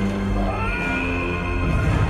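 Dramatic orchestral film score with a big cat's cry that rises in pitch and is then held as the lion falls down the cliff.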